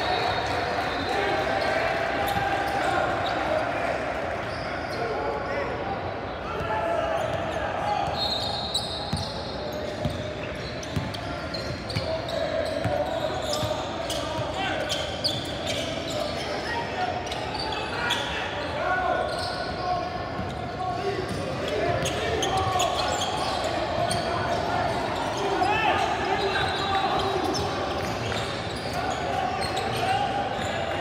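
A basketball being dribbled and bounced on a hardwood gym court during play, with players and spectators calling out and chattering throughout.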